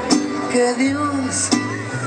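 Mariachi band playing, with strummed guitars over changing bass notes and a melody line above.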